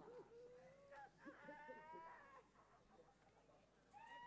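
Near silence, with a faint, distant voice-like wail about a second in that lasts about a second.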